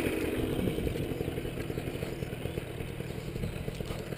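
Paramotor engine idling steadily, growing a little fainter over the first couple of seconds.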